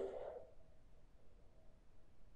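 Near silence: quiet room tone, with the last of a man's spoken word fading away at the very start.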